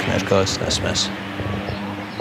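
A few short bits of speech, then a steady low hum of background noise on an outdoor live microphone.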